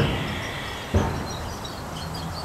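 A pause in speech filled with steady low background noise, with a brief soft sound about a second in.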